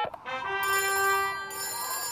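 Cartoon telephone ringing at the far end of a call just dialled: one bright electronic ring that holds for about two seconds.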